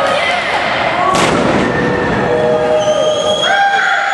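A single thud about a second in as a wrestler's body hits the wrestling ring's canvas in a slam, under continuous shouting voices with one long held yell near the end.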